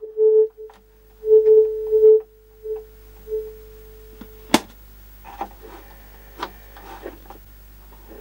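Steady single-pitch test tone of about 450 Hz from the portable TV's speaker, the pattern generator's sound signal, cutting in and out several times over the first three and a half seconds. A sharp click about four and a half seconds in, then faint small handling clicks.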